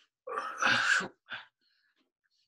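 A person's short wordless vocal sound, less than a second long, followed by a brief second burst.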